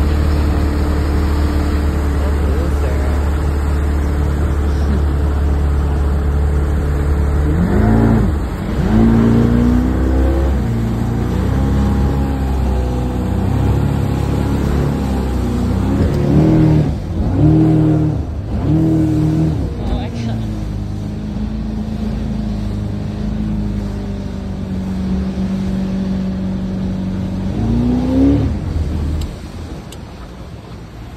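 Boat outboard motor running under way. Its pitch is steady at first, then rises and falls several times in quick surges as the hull rides over rough chop, before settling again.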